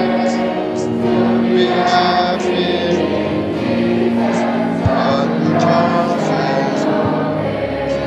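Many voices singing a hymn together.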